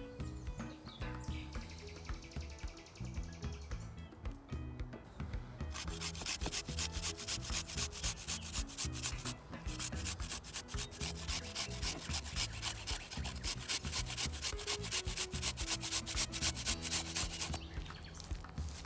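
Garlic cloves grated on a small handheld metal grater: a quick, even run of rasping strokes starting about six seconds in, with a brief pause partway through, and stopping just before the end.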